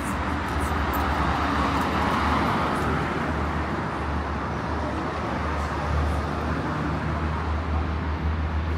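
Road traffic noise: cars on a city street, a steady tyre-and-engine hum with a low rumble, swelling as a car passes about two seconds in.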